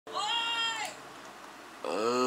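A single high-pitched, cat-like meow, drawn out for just under a second, its pitch rising slightly and then falling away at the end.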